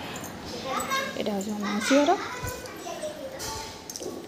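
Children's voices at play: non-word calls and chatter, with one drawn-out call about halfway through that rises in pitch at its end.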